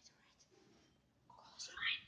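Faint room tone, then a brief whisper near the end.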